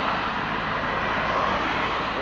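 Road traffic passing close by: a steady rush of car and truck engine and tyre noise.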